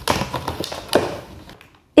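Empty plastic water bottle crackling and clicking as a small dog bites and chews on it. A quick, irregular run of crackles comes over the first second and a half, then it stops.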